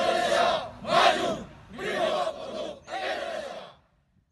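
A squad of uniformed police officers shouting together in unison: four loud shouted phrases with short breaks between them.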